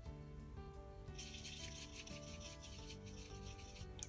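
A paintbrush scrubbing and swirling in a dry watercolor pan, mixing up a dark brown: a faint, scratchy rubbing that starts about a second in.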